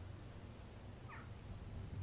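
A brief, faint animal call falling in pitch, about halfway through, over a low steady background hum.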